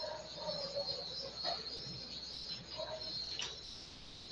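Faint, steady high-pitched insect chirring over low background noise, picked up through a video-call microphone.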